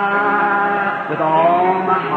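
A voice singing a slow worship song in long held notes, gliding to a new note about a second in, on a muffled old recording.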